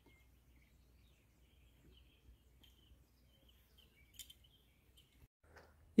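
Faint, scattered bird chirps over otherwise quiet surroundings, with a soft click about four seconds in.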